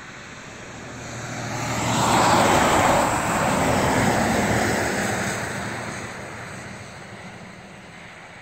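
A tractor-trailer passing by on the highway: its engine and tyre noise swell over about two seconds, peak, then fade away as it goes by.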